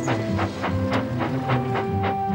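Steady chuffing of a small steam tank engine pushing a loaded train of trucks, about three puffs a second, over background music.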